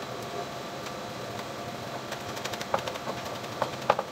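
A chef's knife tapping on a plastic cutting board: a handful of short chopping strokes in the second half, the last near the end loudest, over the steady hum of a fan.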